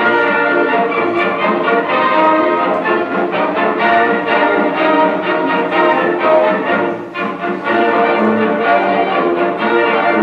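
Orchestral film score led by strings, the opening-credits music of a 1943 wartime film, played over a hall's loudspeakers.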